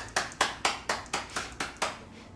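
Hands clapping in a quick, even run of about four claps a second, stopping just before the end.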